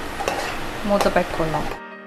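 A spoon stirring thick tomato masala as it sizzles in a non-stick pan. Near the end the sound cuts off abruptly, leaving quiet background music.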